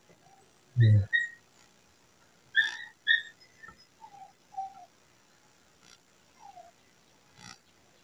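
A few short, high-pitched whistled chirps, the loudest two close together about two and a half to three seconds in, with fainter, lower falling chirps later. A brief low voice sound about a second in.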